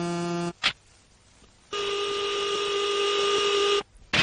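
Steady electronic tones from a film soundtrack. A low held tone stops about half a second in, followed by a short sharp click and a second of near silence. A higher steady tone then holds for about two seconds and cuts off suddenly.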